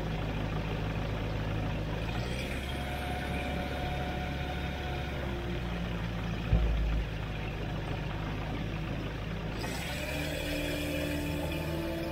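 Ultralight aircraft's propeller engine running steadily at low taxiing power, heard inside the cockpit, with a brief low thump about halfway through.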